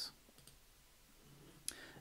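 Near silence of room tone, broken by one short, sharp click near the end.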